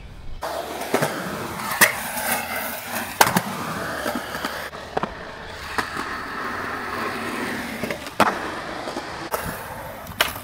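Skateboard wheels rolling over rough concrete with a steady rumble, broken by about seven sharp clacks of the board hitting the ground as the skater pops and lands.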